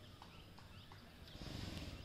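Faint outdoor background with a few short, high chirps from small birds and light clicks, then a brief low rumble with hiss about one and a half seconds in.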